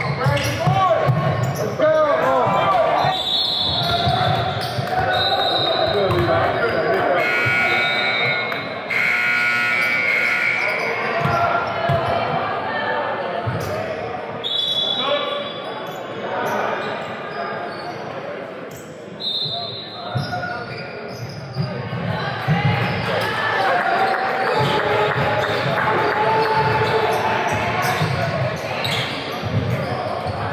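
Basketball game in a large gym: a ball bouncing on the hardwood court, sneakers squeaking several times, and players' and onlookers' voices echoing in the hall.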